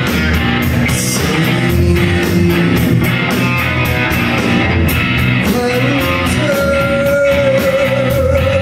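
Live rock band playing loudly: electric guitars, bass guitar and drums with a regular beat. A long held note comes in about five and a half seconds in.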